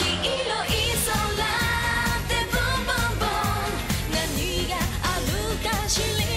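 J-pop song performed live: female idol group singing over an upbeat pop backing with a steady beat.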